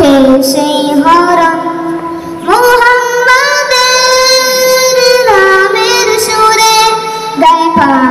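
A group of boys singing together in unison through microphones, the melody rising into a long held note about two and a half seconds in and falling back after about five seconds.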